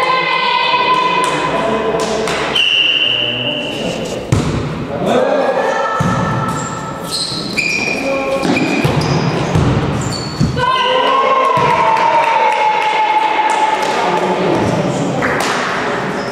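Volleyball rally: the ball thumping off players' hands and arms, with players shouting and calling to each other, echoing in a large gymnasium.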